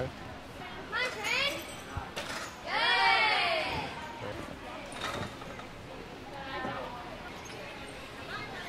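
High-pitched girls' voices calling out across a gym. The loudest, longest call comes about three seconds in. A couple of short thuds are also heard.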